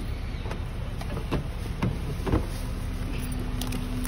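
A car door being handled and opened: a few light clicks and knocks over a steady low rumble, with a steady low hum starting about halfway through.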